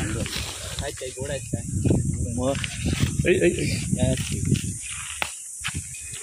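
Voices talking in Marathi, with a steady high hiss in the background.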